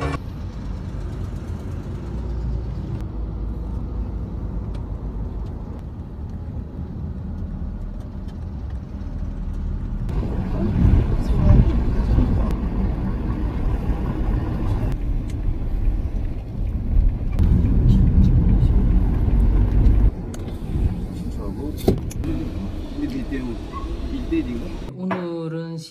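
Street ambience with a steady low rumble of traffic and indistinct voices at times, changing abruptly at several points.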